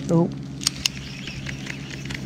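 Two sharp clicks close to the microphone, about a fifth of a second apart, after a short spoken "oh", over a steady low hum.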